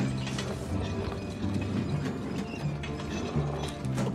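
Brass luggage cart rattling and clicking as it is pushed along, over background music with a low, stepping bass line.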